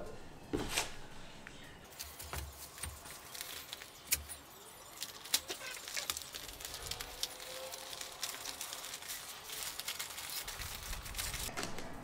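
Newspaper rustling and crinkling while grilled calçots are laid on it for wrapping, with many small crackles and taps.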